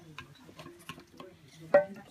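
A screwdriver prying at the lid of a metal tin of clear wax, with small scraping clicks and one sharp metallic clink near the end.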